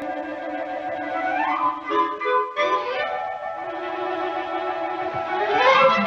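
Orchestral music with violins and woodwinds playing held notes, with a phrase rising in pitch about a second and a half in and another near the end.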